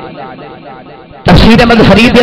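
A man's speech through a public-address system trailing off in echo, then, a little past halfway, cutting back in suddenly at very loud, overdriven level.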